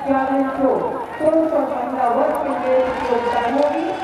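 A man's voice over a stadium public-address loudspeaker, echoing so that the words are hard to make out.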